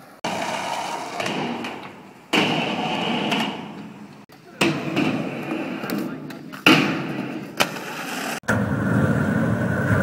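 Skateboard wheels rolling on concrete and on a ramp, with sharp board knocks from tricks being popped and landed. The sound changes abruptly several times.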